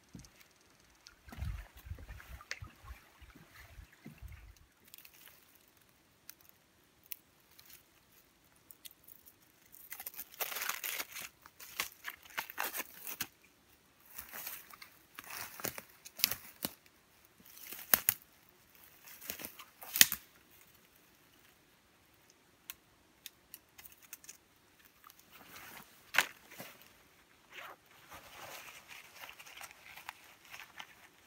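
Bouts of rustling, crunching and tearing from dry material being handled, with a few sharp snaps, the loudest about twenty seconds in; a few dull thumps in the first few seconds.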